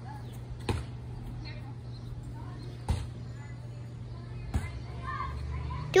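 A steady low hum with three brief knocks spread across the few seconds, the hum swelling slightly near the end.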